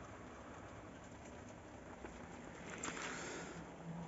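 Faint steady room noise from a running desktop computer, with a soft rustle about two and a half to three and a half seconds in as the filming phone is moved.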